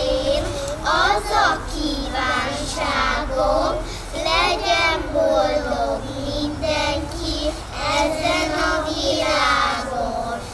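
A group of young kindergarten children singing a Christmas song together, with held, wavering notes.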